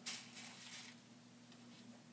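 A brief, faint rustle of hands handling fabric and pins at the start, then near silence over a steady low hum.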